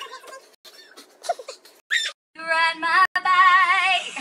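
A woman's voice singing one long, loud held note with a wide vibrato, coming in about two seconds in after some faint talk. A sharp click interrupts it near the three-second mark.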